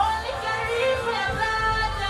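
Male dancehall artist singing into a microphone over a backing track with a recurring bass thump, heard through a live PA.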